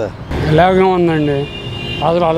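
A man's voice speaking one drawn-out phrase over steady road-traffic noise.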